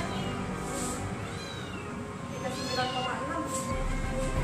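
A cat meowing twice, one call about a second and a half in and another just before three seconds, over background music.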